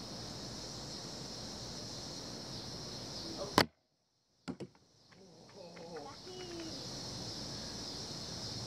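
A frisbee hits the camera with a single sharp knock about three and a half seconds in. The sound cuts out for nearly a second after it, then comes back with a couple of small clicks. A steady high hiss runs underneath.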